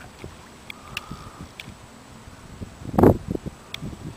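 Low knocks and bumps against a canoe hull, with wind on the microphone; the loudest is a heavy thump about three seconds in, and a few faint short clicks come between.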